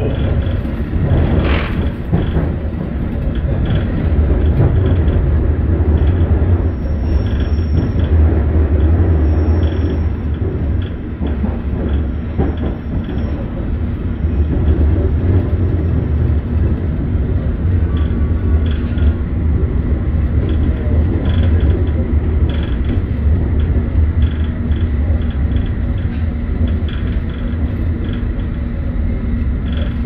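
Inside a moving London Underground S8 Stock carriage: a steady low rumble of wheels on rail and running gear, with scattered irregular clicks.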